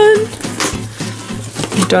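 A woman's held sung note ('dun') ending just after the start, then soft rustling and light knocks of a cardboard box flap and plastic wrap being handled, with another sung note starting at the very end.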